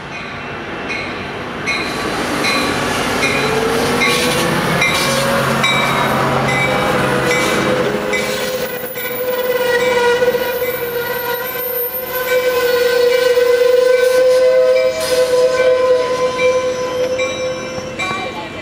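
Amtrak passenger train pulling into a station, with a bell ringing steadily about twice a second. A long, high, steady squeal from the train rises in pitch a few seconds in and holds until near the end.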